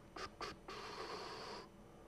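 Two light clicks, then about a second of steady scraping from hands working at a lectern console.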